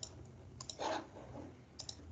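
Computer mouse buttons clicking: a few pairs of sharp clicks spread over two seconds, with a brief soft noise about a second in and a low hum underneath.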